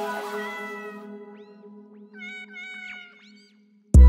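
Music track with cat meows worked into it: sustained chords fade while a few short, pitch-gliding meows sound. A heavy bass and drum beat cuts in at the very end.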